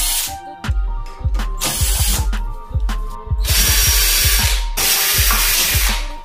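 Cordless drill-driver running a bolt into a disc brake caliper and its mounting bracket, in several short runs, with background music that has a steady beat.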